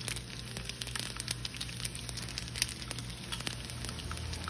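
Hot ghee sizzling in a pan with cumin seeds, garlic cloves and dried red chilies for a tadka, with many small, sharp crackling pops.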